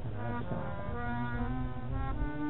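Harmonium playing an instrumental interlude of held, reedy notes that step from one pitch to the next between sung lines of a bhajan.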